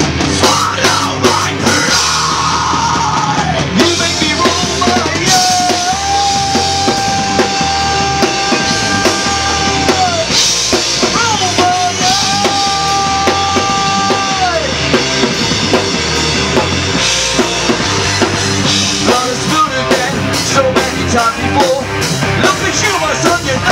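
Heavy rock band playing live through a PA: drum kit, distorted electric guitars and bass, with two long held notes, one lasting about five seconds and a shorter one a couple of seconds later.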